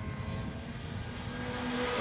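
Classic Mini racing cars' engines running at speed past the trackside microphone, a steady drone that rises slightly in pitch.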